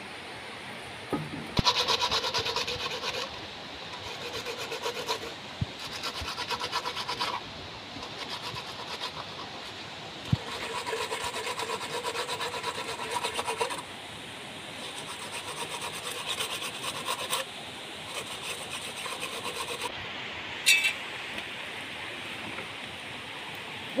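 Insects buzzing in the forest: rasping, pulsing calls in repeated bursts of one to three seconds with short pauses between, over a steady background hiss. A brief, higher call comes near the end.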